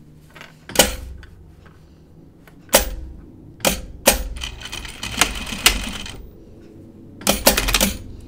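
Handling noise at an industrial sewing machine: a series of sharp clicks and knocks, irregularly spaced, with a quick cluster near the end, as the work is positioned under the presser foot; the machine is not stitching.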